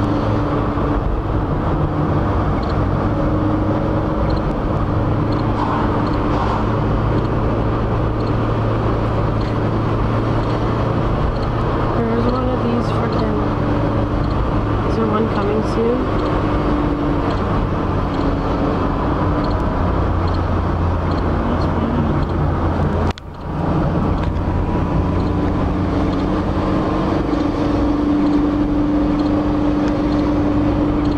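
Car engine and road noise heard from inside the cabin, a steady hum whose engine tones shift now and then as the car takes the bends. About three quarters of the way through, the sound cuts out for a moment and returns.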